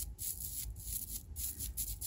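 Faint handling noise: fingers rubbing and shifting on a small terracotta plant pot, with a few light clicks.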